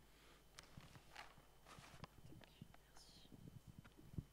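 Near silence: room tone with faint whispering and a few small clicks.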